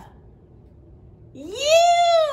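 A woman's voice giving one drawn-out, meow-like call that rises in pitch, holds and falls again, starting about one and a half seconds in.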